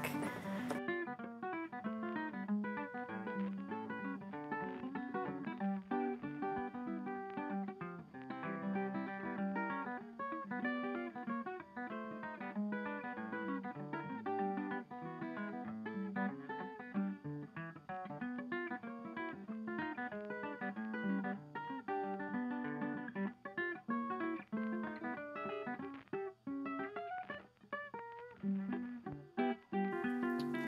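Background music: an acoustic guitar playing a run of quickly plucked notes.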